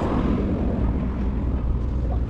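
Road traffic passing close by, mixed with a deep, steady rumble of wind on the microphone.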